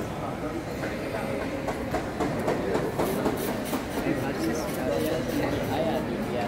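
Crowd babble in a busy market hall: many voices overlapping into a steady murmur, with scattered short clicks and clatter from about halfway through.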